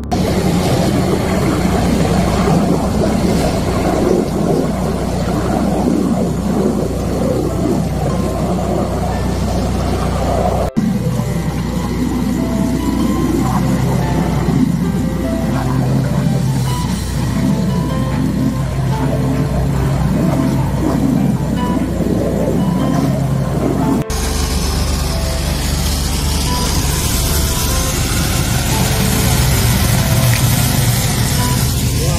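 Steady running of a high-pressure drain jetter, its hose working inside a street drain, under background music. The sound changes abruptly twice, about a third of the way in and again near the end.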